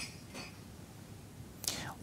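Pause in a man's speech: low room tone with a faint mouth click at the start, then a short audible intake of breath near the end just before he speaks again.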